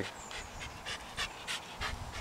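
Bernese mountain dog puppy panting softly, in quick, even breaths of about four a second.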